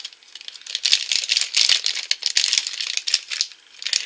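Foil blind bag crinkling as it is torn open and handled, in a dense run of crackles that eases briefly twice. The loose plastic minifigure pieces rattle inside it.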